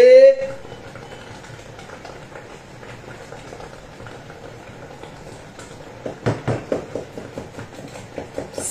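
A woman's drawn-out mournful cry of "hey", rising in pitch and breaking off about half a second in, followed by quiet room noise. About six seconds in comes a short run of soft irregular clicks and knocks.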